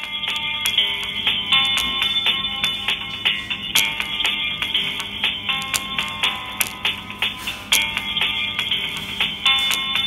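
Music played through a pair of small salvaged iPad 1 speakers in 3D-printed enclosures, driven by a homemade stereo class D amplifier board. The sound is thin, with little bass, and the sharp beats are the loudest part.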